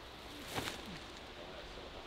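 A short swish about half a second in as a disc golf driver is thrown forehand, over faint outdoor background.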